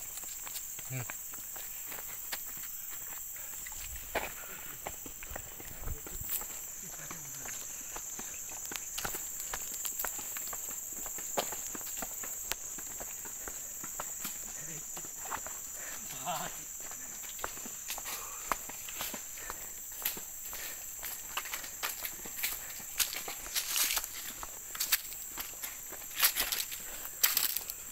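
Footsteps of people walking on a concrete path scattered with dry leaves, a string of short irregular steps that grows busier in the second half. A steady high insect drone runs underneath.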